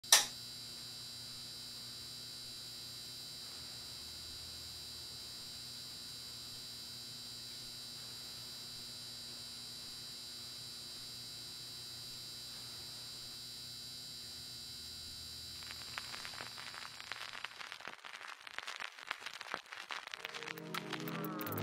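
A sharp click, then steady static hiss and hum for about fifteen seconds, with crackling that comes in and grows louder over the last few seconds.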